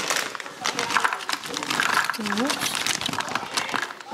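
Plastic snack bag crinkling while corn sticks are tipped out of it into a plastic lunchbox, a dense crackle throughout.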